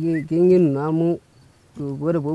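Goats and sheep in a herd bleating: a short bleat, then a long wavering one lasting almost a second.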